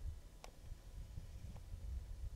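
Quiet outdoor background: a faint steady low rumble, with two faint short ticks, one about half a second in and one a second later.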